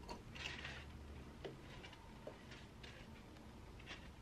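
Faint rustling and a few light taps as pieces of chopped raw ginger are dropped into a plastic blender cup.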